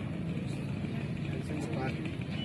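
Outdoor background noise: a steady low rumble with faint, indistinct voices.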